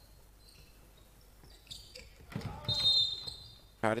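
A referee's whistle blows one steady shrill note for about a second, about two and a half seconds in, with a basketball bouncing on the court in the echoing gym.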